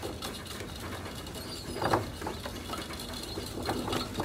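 Naked mole-rats giving short chirps and scuffling against each other, a few brief sounds scattered through, the loudest about two seconds in, over a steady low hum.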